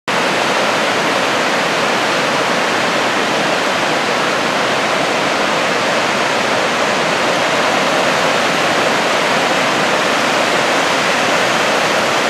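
Steady, unbroken rushing noise of ocean surf breaking, even in level with no separate wave crashes standing out.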